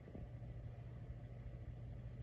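A low, steady hum, a little louder from the start, with a faint knock right at the beginning.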